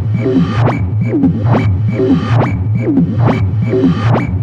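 Modular-synth techno with the kick drum out: a steady bass line under short percussive hits about twice a second, each followed by a quick falling synth blip.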